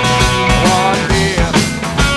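Blues-rock band playing an instrumental passage: electric guitar with gliding notes over a steady drum beat.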